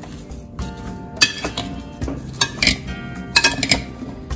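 Metal spoon clinking and scraping against a ceramic bowl as chopped vegetables and spices are tossed together, with a string of irregular sharp clicks. Background music plays underneath.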